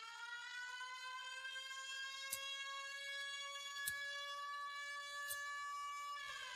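A siren wailing, gliding up in pitch over the first second or so and then holding one steady note. Three sharp clicks come about a second and a half apart.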